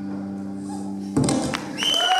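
The band's last chord rings out as a steady low sustained tone, then a sudden thump about a second in. Near the end comes a high tone that rises and then holds.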